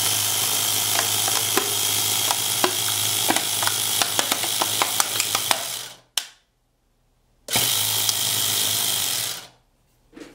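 A small 12-volt car tyre compressor, rebuilt as a vacuum pump, running with a steady hum and rattle and scattered sharp ticks. It stops about six seconds in, runs again about a second and a half later, and stops once more near the end.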